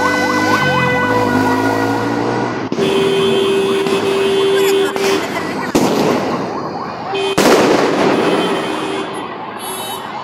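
Emergency vehicle siren, moving from fast up-and-down sweeps into steady held tones, with two sharp bangs of fireworks about six and seven and a half seconds in, the second the loudest.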